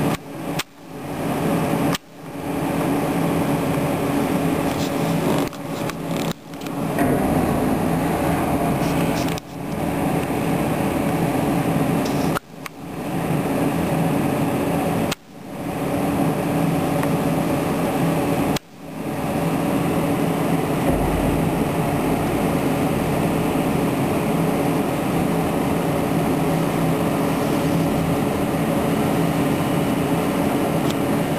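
Excavator's diesel engine running steadily, a low hum with a clear pitch, as its boom holds a steel wind-turbine tower section. The sound drops away suddenly and swells back about seven times in the first twenty seconds, then runs on evenly.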